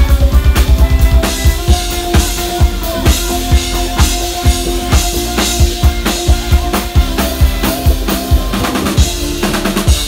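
Live pop-rock band playing: a drum kit drives a steady beat of bass drum and snare, opening with a quick run of drum hits in the first second, under held guitar and bass notes.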